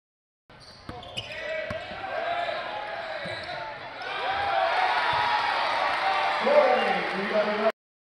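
College basketball game sound: a few sharp ball bounces on the hardwood under a din of crowd and player voices. About four seconds in the crowd grows louder as the inside basket goes up, with one loud shout near the end. The sound starts and stops abruptly.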